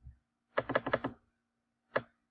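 A quick rapid run of clicks from a computer mouse's scroll wheel as the chart is zoomed, about half a second long, then a single click near the end. A faint steady hum sits underneath.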